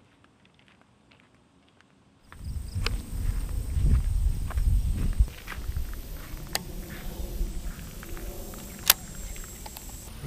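Near silence for about two seconds, then low rumbling and rustling close to the microphone of a body-worn camera as an angler handles a baitcasting rod and reel, loudest just after it begins. Two sharp clicks come in the second half, a little over two seconds apart.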